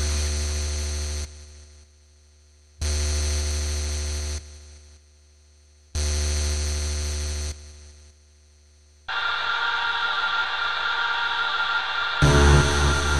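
Drumless breakdown in a jungle/drum-and-bass mix: a sustained synth chord over deep bass hits three times, about three seconds apart, each held about a second and a half before fading out. About nine seconds in, a steady hissing synth pad takes over.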